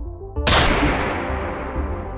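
A single rifle shot about half a second in, sudden and loud, with a long echoing tail that fades over the next second and a half. It plays over steady synth background music.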